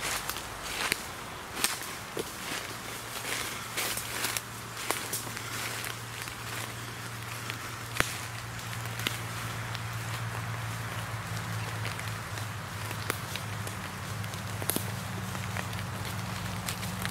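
Footsteps crunching through dry fallen leaves and twigs on a forest floor, in irregular steps. A steady low hum sets in a few seconds in and carries on underneath.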